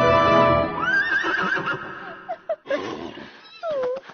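Background music stops within the first second. A horse whinnies, one wavering call lasting about a second, followed by a few shorter gliding calls and clicks.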